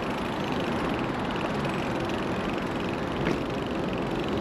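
Steady noise of riding a bicycle beside a city road: traffic and wind, with no single sound standing out and a faint click about three seconds in.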